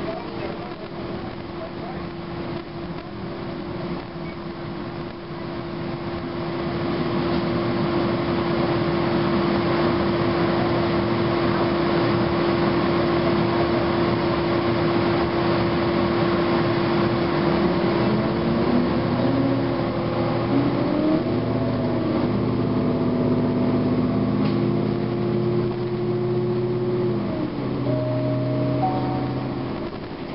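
Interior ride noise of a 2009 Gillig Advantage bus under way: its Cummins ISM diesel engine and Voith transmission run with a steady whine over road rumble. The noise grows louder a quarter of the way in, and through the last third the tones rise and step in pitch as the bus changes speed.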